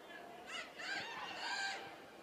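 Players' high-pitched shouts and calls across a football pitch, several overlapping cries for about a second and a half.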